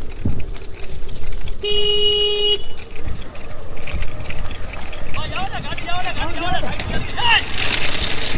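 A vehicle horn sounds once, a steady tone lasting about a second, over a low rumble of the moving vehicle and wind. From about five seconds in, several voices shout in rising and falling calls.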